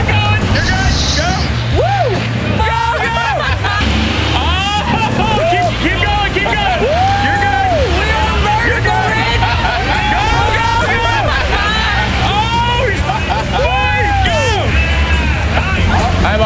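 People yelling drawn-out, rising-and-falling cries of excitement and alarm over the low running of a Cummins twin-turbo diesel engine in a rock-crawling Ford Bronco, with background music underneath.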